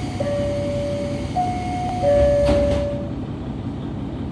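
Two-tone chime inside a KiHa 150 diesel railcar, sounding twice, each time a higher note followed by a lower one, over the steady rumble of the idling diesel engine. About two and a half seconds in there is a short knock, and the engine rumble swells for about a second.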